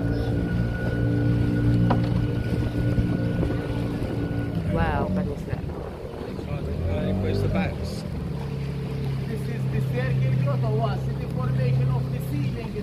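Small tour boat's engine running with a steady hum; its tone breaks off about five seconds in and a new, slightly different steady tone takes over a few seconds later.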